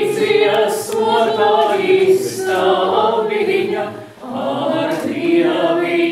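Men's and women's voices singing a Latvian folk song together a cappella, in long held notes, with a brief breath break about four seconds in.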